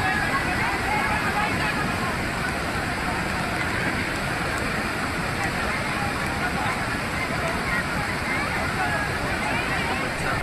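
Floodwater rushing down a rocky waterfall channel, a steady heavy torrent, with people's voices faintly over it.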